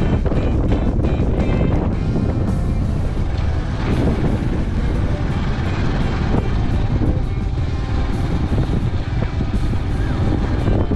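Motorbike riding: a steady low rumble of engine and wind noise, with background music playing over it.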